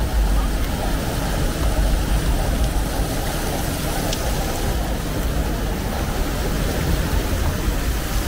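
Ground-nozzle fountain jets spraying water, a steady rush of noise with a low rumble underneath.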